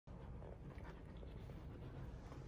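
Two Akita dogs play-biting at each other's muzzles: faint, brief mouthing and breathing sounds, with no barking.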